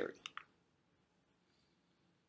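Near silence after a spoken question, with two faint quick clicks about a quarter of a second apart just after the voice stops.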